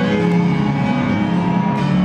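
Electronic dance music played loud over a club sound system during a live DJ set: held melodic synth notes over a steady bass note, with little percussion until a hit near the end.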